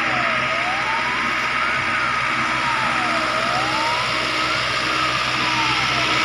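Fire engine siren wailing, its pitch rising and falling slowly, about one full rise and fall every three seconds.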